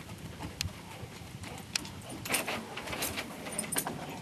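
A husky-type dog running over dry leaves: irregular footfalls and rustling that grow busier in the second half, with light jingling, likely its collar tags.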